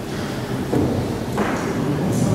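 A handheld microphone being picked up and handled, giving two soft thumps about a second apart over the amplified room sound of a lecture hall.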